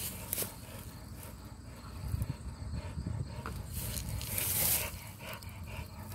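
A dog panting and breathing hard after a flirt-pole workout, with a few knocks and rustles from handling, and a loud hissing breath burst a little past the middle.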